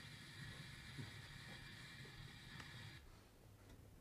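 Near silence: a faint, steady hiss that drops away about three seconds in.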